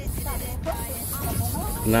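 Wind rushing over the microphone and the sea washing around a small boat, a steady hiss with a low rumble, with faint voices in the background.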